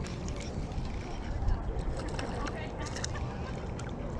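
Spinning reel being cranked to bring in a small hooked bass, with a few light clicks, under a steady low wind rumble on the microphone.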